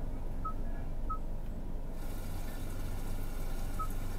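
The Kia Forte's built-in 'Rainy Day' nature sound playing through the car's speakers as a steady rain-like hiss. Three short touchscreen beeps sound over it: about half a second in, about a second in, and near the end.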